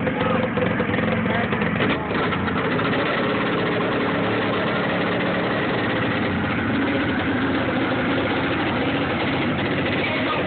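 V-twin engine of a racing garden tractor running steadily as the tractor drives along the dirt track, with a brief dip about two seconds in.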